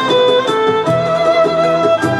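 Violin playing a Turkish melody in the Kürdilihicaz makam, in held notes that change every half second or so, over a lower sustained accompaniment.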